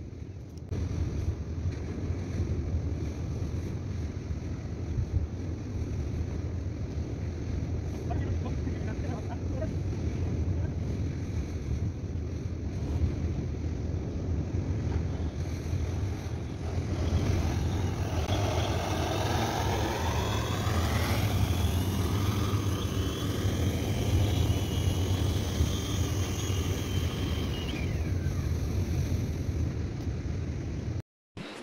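Wind rumbling on the microphone over the wash of surf. From about halfway through until near the end, a pitched sound with sliding, then steady, tones rises above it.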